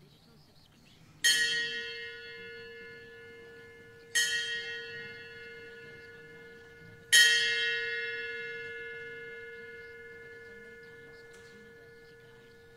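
A bell struck three times, about three seconds apart, each stroke ringing on with a steady hum and fading slowly; the last stroke rings longest.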